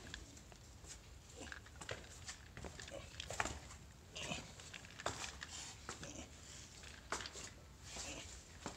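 Irregular footsteps and scuffs on a wet rock cave floor, a scatter of short knocks with one sharper one about three and a half seconds in.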